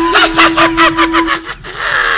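A rapid high cackling laugh, about eight quick syllables in a second and a half, over a held note of background music, ending in a short breathy hiss.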